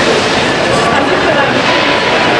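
A steam-hauled train pulling out, its coaches rolling along the rails in a steady noise, with crowd voices mixed in.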